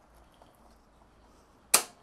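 Near quiet, then one sharp, loud click near the end: the electric motorcycle's circuit breaker being flipped by hand while the controller is power-cycled to take new settings.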